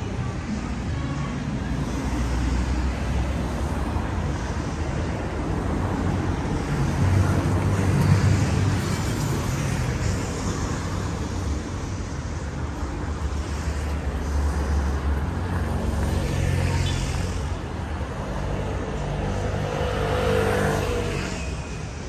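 City road traffic: car engines running and passing on the street beside the pavement, a continuous low rumble that swells about eight seconds in.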